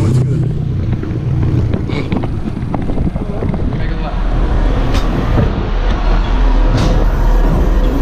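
Muffled, bass-heavy electronic dance music heard through walls, its deep bass growing stronger from about halfway through, mixed with the rustle and knocks of a handheld action camera being carried.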